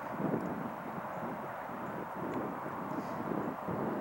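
Steady outdoor ambient noise: a low, even rushing haze with no single clear source standing out.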